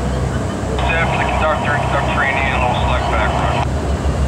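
Steady low drone of the engines of a paddlewheel tour boat passing close by. From about a second in until near the end, a thin voice comes over a loudspeaker.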